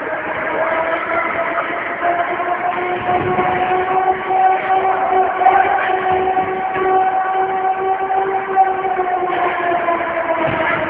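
A horn sounding one long held note for about nine seconds, its pitch rising a little at first and then steady until it cuts off near the end.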